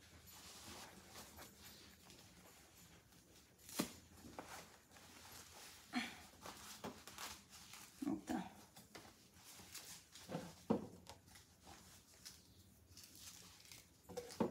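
Faint rustling and handling of a fabric cold-therapy wrap and its ribbed hose as it is fitted around a foot and ankle. There are a few sharp clicks or knocks, the loudest about four seconds in.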